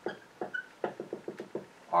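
Felt-tip dry-erase marker tapping and squeaking on a whiteboard while small circles and dots are drawn: a string of sharp taps, quickening into a rapid run about a second in, with one short squeak.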